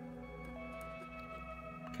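Soft background music with long held notes that change every second or so.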